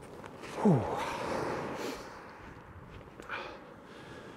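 A man's 'whew', a sigh whose pitch falls steeply, trailing off into a long breathy exhale.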